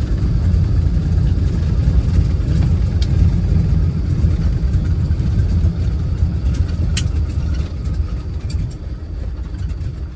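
Beech 18 twin-engine aircraft running, a steady low engine rumble that eases off slightly over the last few seconds.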